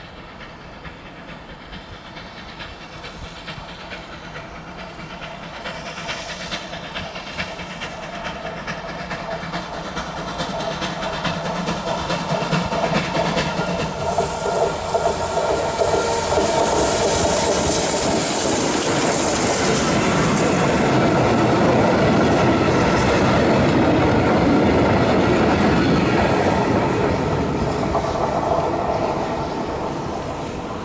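Ol49 steam locomotive hauling a passenger train, approaching and growing steadily louder, then passing close by with a burst of high hiss about halfway through. Its coaches then clatter past over the rail joints, loudest late on, and the sound drops away near the end.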